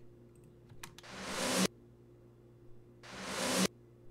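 Reversed snare drum sample playing solo: two swells of noise, each building up over about two-thirds of a second and cutting off suddenly, about two seconds apart.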